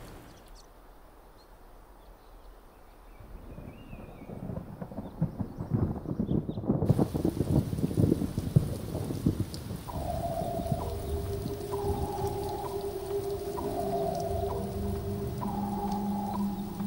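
Rain falling on water with rumbling thunder, swelling up from near quiet over the first few seconds. About ten seconds in, a few held musical tones come in over the rain.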